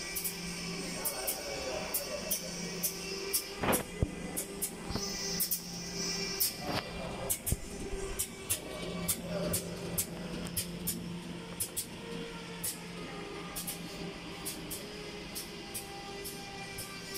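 Steady hum of factory machinery with many irregular sharp clicks, and a couple of louder knocks about four and seven seconds in.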